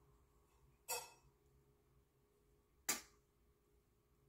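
Two light clinks about two seconds apart, the first with a short ring: a measuring spoon tapping against a seasoning container while seasoning is spooned onto raw chicken wings.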